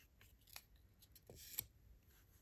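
Faint rustling and a few soft clicks of a paper word card being handled and stuck onto a whiteboard, the loudest click about a second and a half in.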